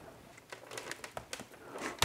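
Hands pulling apart a dense, root-bound Jerusalem artichoke root ball: faint crackling and rustling of roots and soil tearing, with scattered small clicks from about half a second in.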